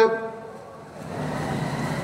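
A short pause in a man's chanted sermon: the echo of his voice fades away, leaving faint background noise that swells slowly before he resumes.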